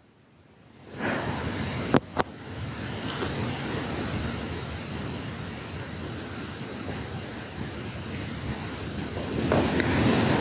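Steady rushing noise, coming in after about a second of near silence, with two sharp clicks about two seconds in.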